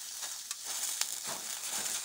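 Field mushroom caps sizzling and crackling on hot aluminium foil, with a fork scraping and clicking on the foil as one cap is lifted; the sharpest click is about a second in.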